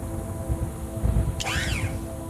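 Electronic background music: steady held synth tones over a low rumble, with a brief high warbling sweep about a second and a half in.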